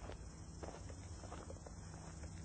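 Faint footsteps: a few soft, irregular steps over a steady low hum.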